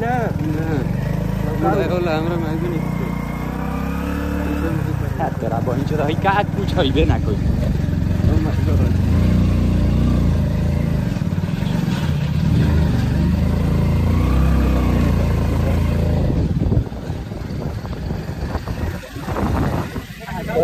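Small commuter motorcycle engine running steadily while being ridden, with a loud low rumble that falls away abruptly near the end.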